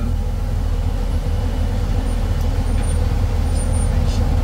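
Steady low rumble of a tow truck's idling engine heard from inside its cab, with highway traffic going by.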